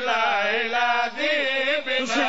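A solo male voice chanting a qasida in long, melodic held notes with heavy vibrato.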